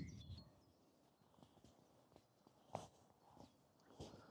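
Very faint, soft footsteps on a mown grass field, a few scattered steps with the clearest near the end, picked up by a DJI Mic 2 wireless transmitter clipped to the walker's jacket.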